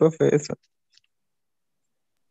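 Spoken Spanish that breaks off about half a second in, then silence with one faint click.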